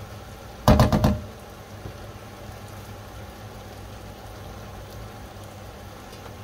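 A metal spoon rapped about four times in quick succession against the rim of an enamel cooking pot about a second in, knocking off the curry after stirring, then a steady low background hiss.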